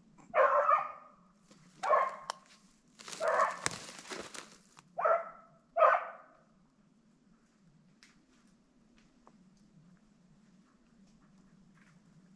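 A hunting dog barking about five times in the first six seconds, then falling quiet: it is barking on a rabbit it has put up in the brush.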